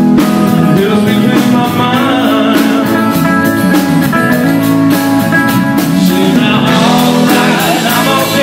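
A rock band playing live and loud: acoustic and electric guitars over a steady drum beat, with a man singing lead.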